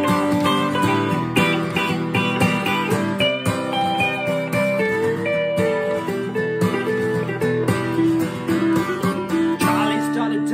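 Instrumental guitar break: an acoustic guitar strums the chords while an electric guitar plays a lead melody over it, with bent notes about four seconds in.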